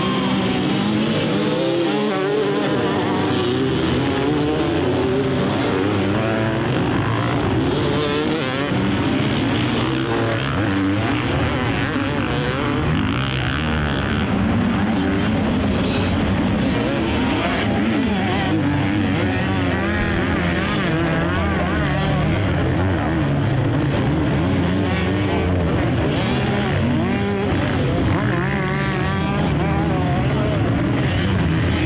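A pack of dozens of enduro dirt bikes revving hard and pulling away together from a mass start, then a continuous din of many engines rising and falling in pitch as the riders work through the course.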